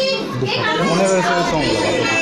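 A child's voice, with a pitch that rises and falls.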